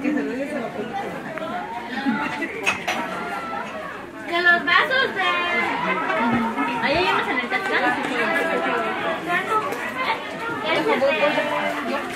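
Many people talking at once: overlapping chatter of a crowd of voices.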